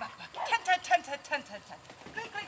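A dog giving a rapid run of short, high-pitched barks and yips, several a second, while it runs the agility course.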